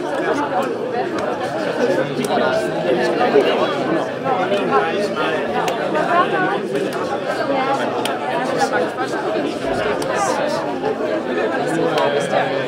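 Indistinct chatter of several young people talking at once in a large room.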